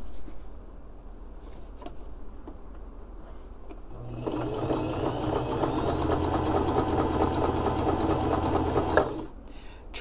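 Electric home sewing machine sewing a close zigzag stitch around the edge of an appliqué, set to a short stitch length. It is quiet for about the first four seconds, then runs steadily for about five seconds and stops shortly before the end.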